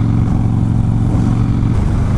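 Harley-Davidson Softail Springer's V-twin engine running steadily as the motorcycle cruises at road speed.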